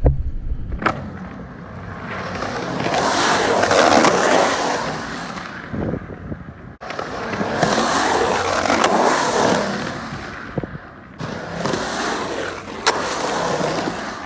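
Hard wheels rolling over concrete in three long swells that build and fade as riders pass close, with a few sharp clacks. The sound cuts off suddenly about seven seconds in, then picks up again.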